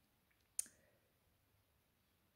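Near silence with a single short click a little over half a second in.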